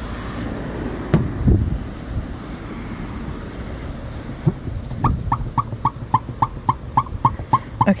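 Aerosol hairspray hissing, cutting off about half a second in. From about five seconds in, a towel rubbed back and forth on the wet car window glass squeaks in an even series of short high squeaks, about three a second.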